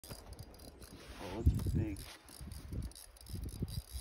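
A brief vocal sound from a person about a second in, with a sharp knock about a second and a half in, over a low rumble.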